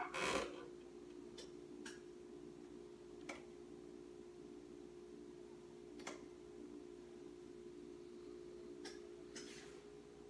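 A 1959 Bulova Model 120 tube clock radio being handled at its clock panel, over a faint steady hum: a brief rustle at the start, a handful of single light clicks spread out, and another short rustle near the end.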